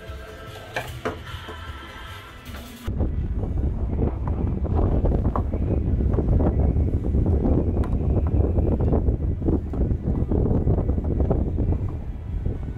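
Background music for about the first three seconds. Then a sudden cut to loud, gusting wind noise on the microphone on a catamaran's open foredeck.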